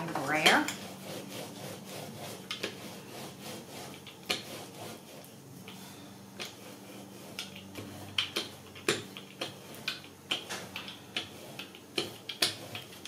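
Rubber brayer rolled over glued paper on a craft mat, pressing the layers down, with scattered light clicks and knocks from the roller and handling, more frequent in the second half.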